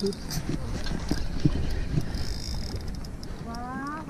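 Scattered knocks and light clatter of fishing gear being handled in a small fibreglass boat. A voice rises briefly near the end.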